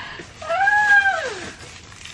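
A single drawn-out high call, about a second long, that rises and then glides down in pitch.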